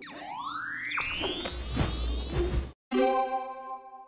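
Cartoon sound effects: a rising electronic sweep over a low rumble that cuts off suddenly near three seconds, followed by a bright chime held for about a second, a title-card sting.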